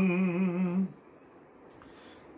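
A man's singing voice holding the last note of a sung line, its pitch wavering slightly. It stops just under a second in, leaving faint room noise.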